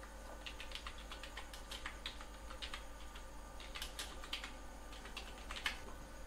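Computer keyboard typing: a quick, irregular run of faint key clicks as lines of code are entered, with one louder keystroke near the end.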